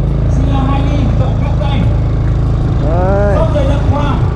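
Motorbike engine running steadily at low speed, a continuous low drone heard from on the bike. A voice calls out briefly about three seconds in.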